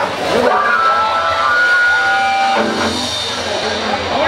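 Live band music in an open-air stage setting, with held melodic notes lasting about a second each over a steady backing, and some voices mixed in.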